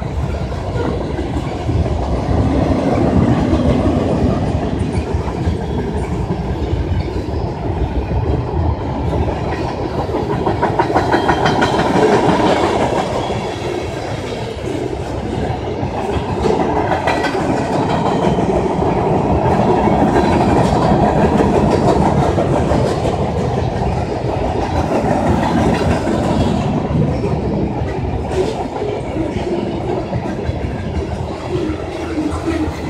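Freight train cars rolling past: a steady rumble of steel wheels on the rails with clickety-clack over the rail joints, swelling and easing a little as the cars go by.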